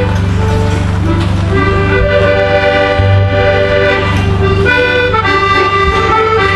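A band of accordions playing a slow tune live, with long held notes and chords that fill out about two seconds in.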